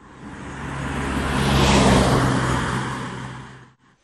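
A road vehicle passing close by, its engine hum and tyre noise swelling to a peak about two seconds in and then fading away.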